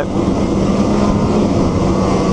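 Snowmobile running steadily at trail speed: a constant engine drone with the rush of wind and track noise over it.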